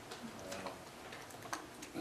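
Quiet room tone with a few soft, irregular clicks in the second half.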